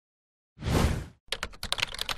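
Title-animation sound effect: a short rush of noise about half a second in, then a quick run of light clicks like typing.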